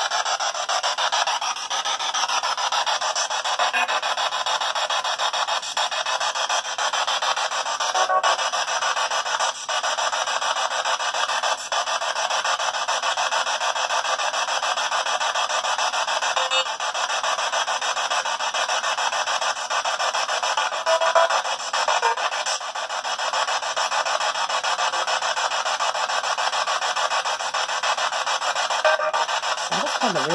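P-SB7 spirit box scanning through radio frequencies and playing through a small foam-covered speaker: a steady, harsh static hiss, thin with no bass, broken now and then by short chopped fragments of radio sound.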